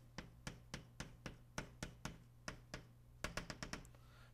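Chalk tapping and clicking against a blackboard as a diagram is drawn: a string of sharp taps, about four or five a second, quickening into a rapid run of taps about three seconds in. A steady low electrical hum lies under it.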